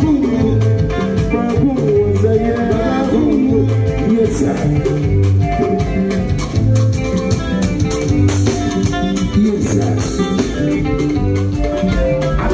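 Live highlife band playing: guitar, hand drums and drum kit over a steady, regularly repeating bass line, with a voice singing over it.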